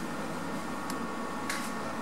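Steady low hum and hiss of lift machinery heard from on top of the car in the shaft, with two faint clicks about a second and a second and a half in.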